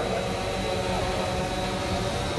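Steady, even background hiss and hum with a faint high-pitched whine, picked up by an open microphone between phrases of a speech.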